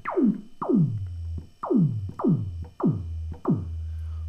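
Roland SH-101 analog synth making kick drum sounds: its resonant filter, turned up until it sings a pure sine tone, is swept downward by the envelope. About six hits sound, each a fast falling pitch drop into a low boom, leaving a low steady hum between hits.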